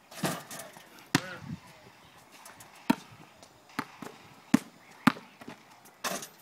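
A basketball bouncing on a concrete court and striking the hoop during dunks: a string of sharp, irregularly spaced thuds, about seven in all.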